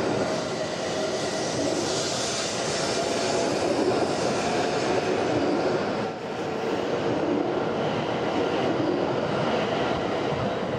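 W7 series Shinkansen pulling out of the station, its cars passing close by: a steady rushing sound of wheels and air with faint whining tones, dipping briefly about six seconds in.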